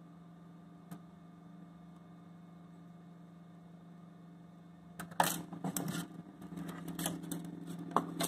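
Plastic 3D-printer filament spool being worked out of the printer's spool bay. A single click about a second in, then from about five seconds in a quick run of clicks and rattles of plastic on plastic, over a steady low hum.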